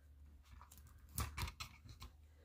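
Hands handling dried greenery and tape on a wooden base: faint rustles and a few soft clicks, mostly in the second half, over a faint low hum.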